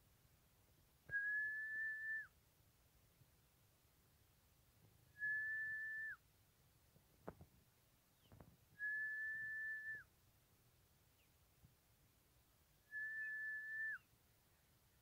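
Four long, even whistles, each held on one steady pitch for about a second and dipping briefly at the end, spaced about four seconds apart. A couple of faint knocks fall between the second and third whistle.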